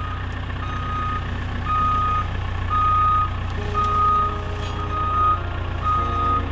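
A JCB skid steer's reverse alarm beeps about once a second, one steady high tone, over the steady running of its diesel engine as the machine backs up.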